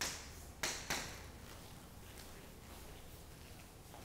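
Chalk on a chalkboard: three short, sharp strokes within the first second, then fainter scratches, over a low steady room hum.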